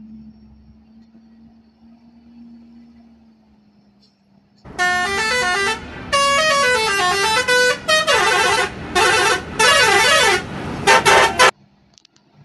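A Hino truck's engine hums low as it approaches. About five seconds in, a loud multi-tone musical horn starts playing a tune: several blasts whose pitch steps up and down. It cuts off suddenly shortly before the end.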